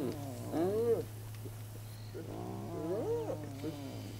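Repeated animal cries, each a short pitched call that rises and then falls: one near the start and a longer run of them past the middle.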